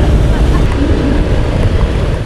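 Heavy, loud low rumble of wind buffeting the microphone, mixed with motor scooter engines running.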